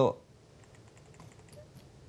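A man's spoken word trails off, then a near-silent pause of room tone with a few faint scattered clicks.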